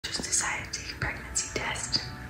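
A woman whispering to the camera.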